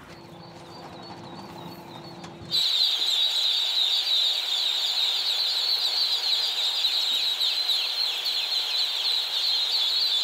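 A large flock of ducklings peeping together in a brooder barn: a dense, continuous chorus of high, falling peeps that starts suddenly about two and a half seconds in.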